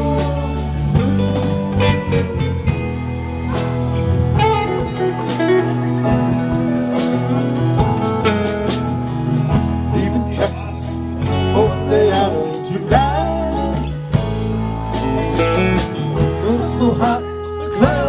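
Live rock band playing an instrumental passage between sung verses: saxophone over electric bass, keyboard and drums.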